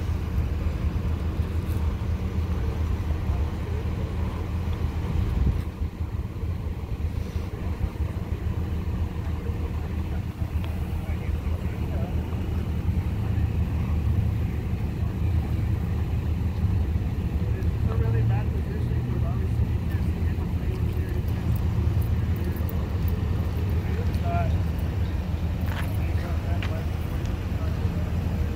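A vehicle engine idling with a steady low rumble, with people talking faintly now and then.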